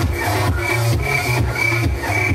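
Techno played loud over an open-air festival sound system, heard from within the crowd. A heavy bass pulses in steady beats, and a short high synth note repeats about twice a second.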